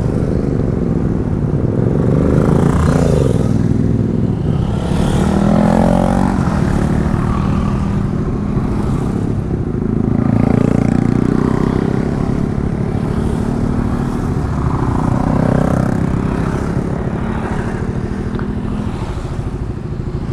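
Motorcycles riding past one after another over a steady low rumble. Each engine note swells and glides in pitch as the bike goes by, several times over.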